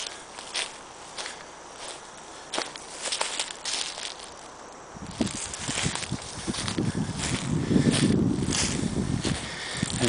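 Footsteps of a hiker walking through low brush on the forest floor, irregular steps with rustling. From about halfway a low rumbling noise joins in and grows louder.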